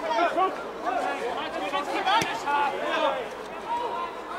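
Indistinct voices of spectators and players chattering and calling out around a football pitch, with a single sharp knock about two seconds in.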